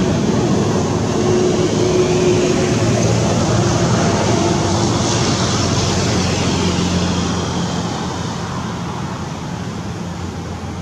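A motor vehicle's engine running steadily, growing fainter over the last few seconds.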